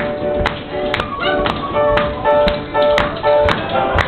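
Tap shoes striking the stage floor in a steady rhythm, the strongest taps about twice a second with lighter ones between, over live flute and piano playing.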